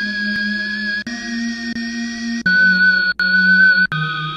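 Chops of a 90 bpm E-flat minor sample loop triggered one at a time from a sampler's slices: held, sustained musical tones that switch to a new chop about a second in, again around two and a half seconds, and just before the end, with the third chop the loudest.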